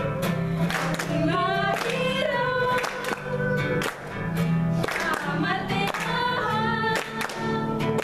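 Singers performing a song together to a strummed acoustic guitar, voices holding and bending sustained notes over steady chords.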